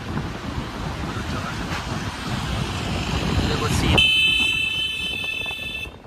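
Wind and road noise rushing past a moving car, heard from inside with cool air blowing in. About four seconds in it gives way to a loud, steady high-pitched tone that holds for the last two seconds.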